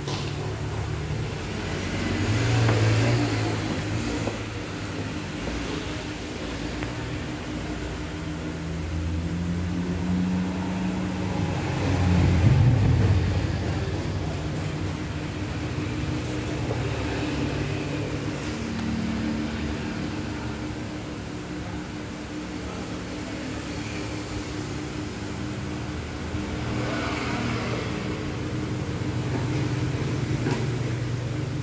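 Engines running steadily, their pitch rising and falling as they rev, with two swells: a smaller one about three seconds in and the loudest about twelve seconds in.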